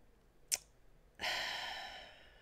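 A person's breathy sigh: a sudden exhale about a second in that fades away, preceded by a short mouth click, as the speaker pauses, at a loss for words.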